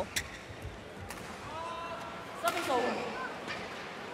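Badminton racket strikes on a shuttlecock, two sharp cracks in the first second. Then voices from the arena crowd rise and fall away in a short reaction as the rally ends, over the hum of a large indoor hall.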